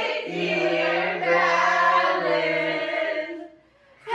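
A group of voices singing together in long held notes, one of them much lower than the rest, stopping about three and a half seconds in.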